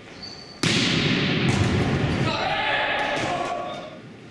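Volleyball game sound in a reverberant sports hall: players' voices and shouts with ball impacts. It cuts in suddenly about half a second in and dies away near the end.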